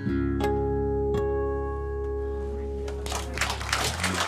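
Steel-string acoustic guitar's closing chord, struck twice in the first second or so and left to ring and fade. Audience applause breaks in near the end.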